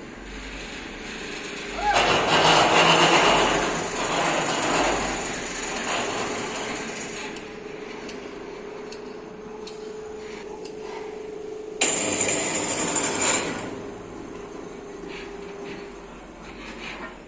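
A gantry crane handles a bundle of concrete railway sleepers. A steady machine hum sets in partway through. There are two loud spells of grinding, clattering noise: one about two seconds in that lasts a couple of seconds, and a shorter one about twelve seconds in.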